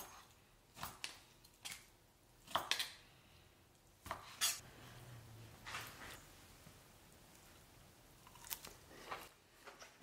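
Chef's knife slicing cooked steak on a wooden cutting board: a scattering of short, irregular knocks and taps of the blade and utensils on the board, fairly faint.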